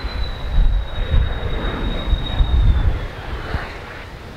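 A large airplane passing overhead: a low rumble, loudest in the middle, with a thin high whine that slowly drops in pitch and fades near the end.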